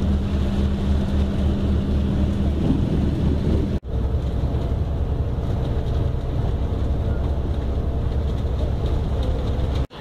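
Steady low rumble of a bus's engine and road noise heard from inside the moving bus, with a brief dropout about four seconds in.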